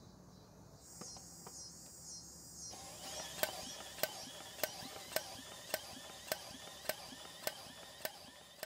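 Small engine turned over for a spark test, with an inline spark checker on the plug lead. Faint, sharp, evenly spaced clicks of the ignition firing, a little under two a second, start about three seconds in: the ignition is producing spark.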